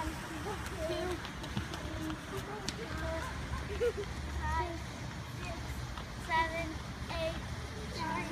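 Children's voices, indistinct calls and chatter at a distance, with one higher squeal-like call about six seconds in, over a steady low rumble.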